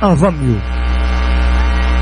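A steady electrical hum with a buzzy stack of even overtones. A spoken word trails off in the first half second.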